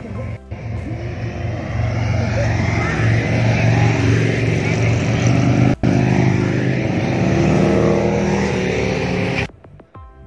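Several motorcycles riding past on a highway, their engines growing louder as they approach and go by. The sound cuts off suddenly near the end.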